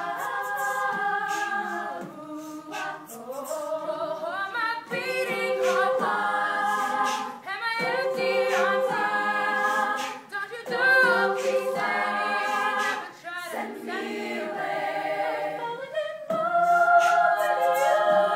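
All-female a cappella group singing in close harmony, a lead voice over held backing chords that shift every second or two, with short sharp vocal-percussion clicks throughout.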